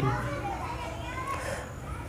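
Children's voices in the background, faint and wavering, as of children playing and calling. There is a short click at the very start.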